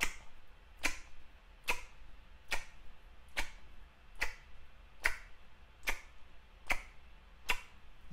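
Mouth smacks from exaggerated, wide-open chewing: about ten sharp, evenly spaced clicks, a little under one a second, one per chew.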